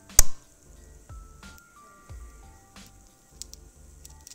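Soft background music with a steady low beat and faint held notes. One sharp, loud click comes just after the start, and a few faint clicks come later.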